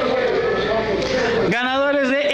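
Voices echoing in a hall: a hubbub of mixed voices, then about one and a half seconds in a single clear, close voice starts speaking.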